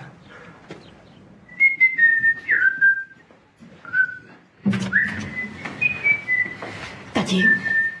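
A person whistling a short tune, a string of separate notes with a few slides between them. About halfway through, rustling and knocking noises come in under the whistling.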